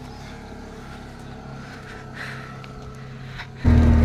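A vehicle engine running steadily and fairly quietly. Near the end it cuts suddenly to the loud, steady drone of an auto-rickshaw engine heard from inside the cab.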